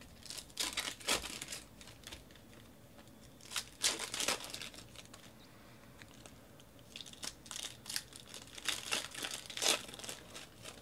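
Foil trading-card pack wrappers being torn open and crinkled by hand, in bursts of crackling about a second long: near the start, around four seconds in, and through the last three seconds.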